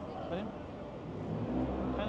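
A car engine on the street, growing louder from about a second and a half in, over voices of people talking.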